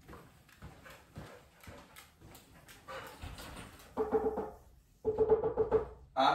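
Light footsteps on a tile floor, then two drawn-out, steady squeals about a second each, the second one pulsing. The squeals could not be pinned to a source.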